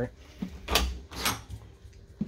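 Lever-handled interior bathroom door of a travel trailer being opened, heard as two short sounds about half a second apart near the middle, the first with a low bump.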